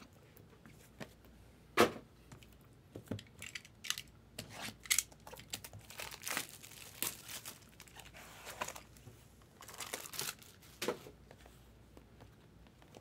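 Hands opening a white cardboard trading-card box: irregular tearing, crinkling and scraping of the box's seal and packaging, with scattered taps and a sharp knock about two seconds in.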